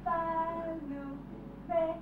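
A high singing voice in slow, long held notes that step down in pitch, with a short new note starting near the end.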